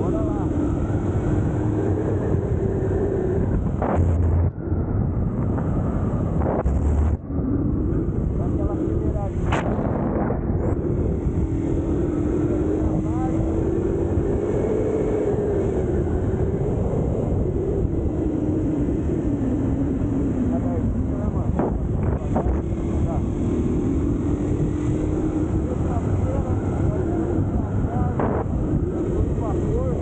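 Honda XR 200's single-cylinder four-stroke engine running under way, its pitch rising and falling with the throttle, under heavy wind rush on the microphone. The sound dips briefly twice in the first eight seconds.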